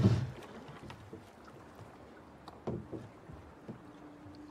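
Wooden rowboat being rowed: a low knock right at the start, then soft creaks and knocks of the oars working in their oarlocks over faint water, one louder creak about two and a half seconds in.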